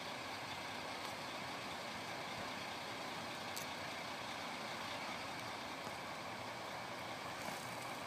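Steady outdoor background hiss with no distinct events, and one faint click about three and a half seconds in.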